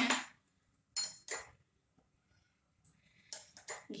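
A steel spoon clinking against a glass bowl while ghee is scooped out: two sharp clinks about a second in, then a few softer clicks near the end.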